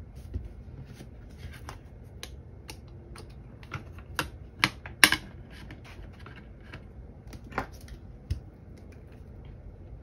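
One-inch black binder rings being worked by hand, opened and snapped shut: a string of irregular light clicks, a few louder snaps in the middle.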